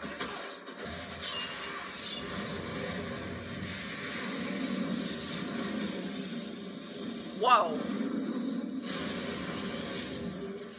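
Soundtrack of a TV action series playing: a steady music score over the sound of a fight scene, with a woman's surprised 'Oh' about three-quarters of the way through.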